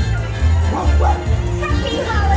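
Stage-show music with a steady bass beat, with a few short cartoon dog barks mixed in between about half a second and a second in.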